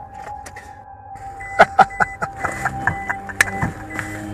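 A car's starter cranking the engine in a quick run of loud knocks about five a second from about a second and a half in, then denser, noisier running as it catches, heard over background music with sustained notes.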